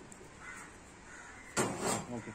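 Galvanized steel sheet being handled on the bed of a sheet-folding machine. A short, loud metallic scrape and clatter comes about one and a half seconds in, after a quieter stretch.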